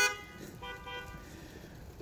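Car horns honking faintly from parked cars, a held tone from about half a second in to about a second and a half in. The honks are a drive-in congregation's stand-in for applause and laughter.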